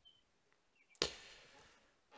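A single sharp hit about a second in, trailing off in a fading hiss over about a second, in an otherwise quiet pause.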